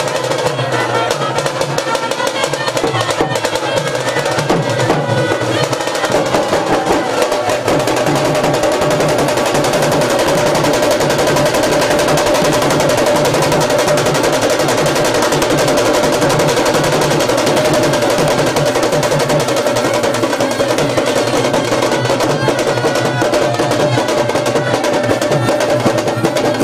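Street drum band playing fast, continuous rolls on stick-beaten snare-type drums, with a steady drone running under the drumming.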